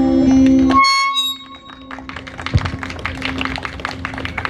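A live band's final held chord cuts off abruptly about a second in, a few high notes ringing on briefly, then scattered audience clapping begins.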